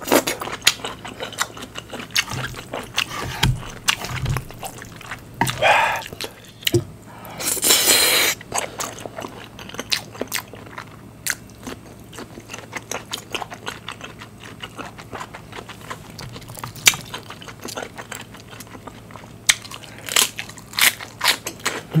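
Close-miked crunching bites and wet chewing of a pickled green pepper, with many sharp crunches and a short hiss-like burst of noise about eight seconds in.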